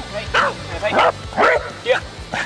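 Corgi barking, about four short sharp barks in two seconds.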